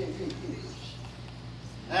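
A man's singing voice holds the last note of a hymn line into the start, then a pause with a steady low hum and a faint voice, before the singing starts again at the very end.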